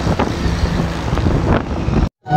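Wind buffeting the microphone beside a busy highway, over the steady rumble of heavy traffic as a large tanker truck drives past close by.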